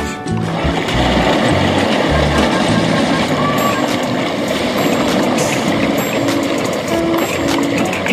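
Dense, continuous splashing of a crowd of tilapia feeding at the water's surface, thrashing for thrown feed pellets, with background music underneath.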